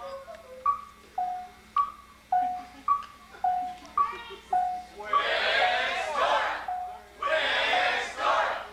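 A repeating high–low two-note tone, a sharp-edged higher note followed by a lower one, about one pair a second. From about five seconds in, a group of voices shouts loudly over it.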